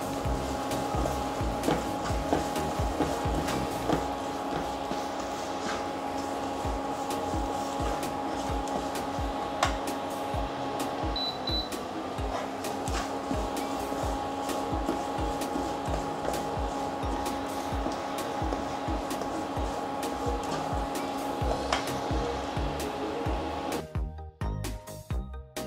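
Chopped shallots, garlic, ginger and green chillies sizzling in hot oil in a non-stick pan, with a metal spatula scraping and clicking against the pan as they are stirred. A steady hum runs underneath.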